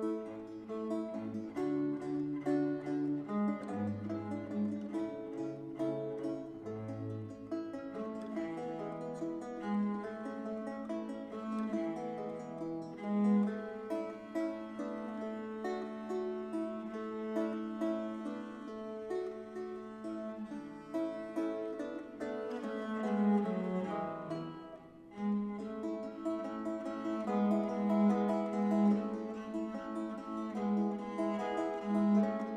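Baroque instrumental duo of viola da gamba and baroque guitar playing a prelude: a bowed gamba line with plucked guitar chords, including one long held note in the middle. The playing drops away briefly about 25 seconds in, then resumes.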